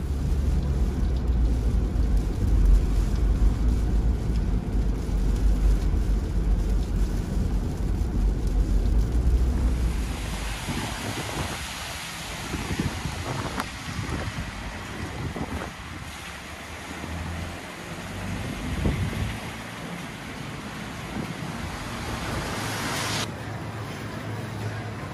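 Wind buffeting the microphone as a heavy low rumble. About ten seconds in, it changes abruptly to a steady outdoor hiss of street noise, with traffic on a wet road. Shortly before the end the hiss drops away.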